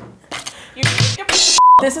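A short, steady, high-pitched censor bleep of about a quarter second near the end, replacing a spoken word, after a second and a half of laughing and voices.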